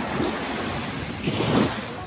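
Small Black Sea waves breaking and washing up on a sandy shore, the surge swelling loudest about one and a half seconds in.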